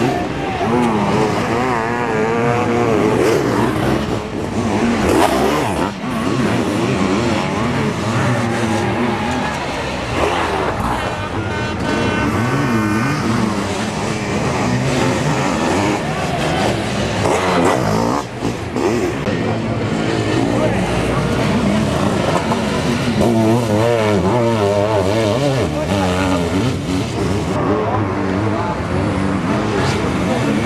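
Motocross sidecar outfits' engines racing hard, the note climbing and dropping again and again with the throttle as they take the hill.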